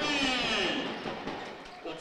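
Spectators' voices in a basketball hall, a cheer with several high, wavering shouts that fades away over the two seconds.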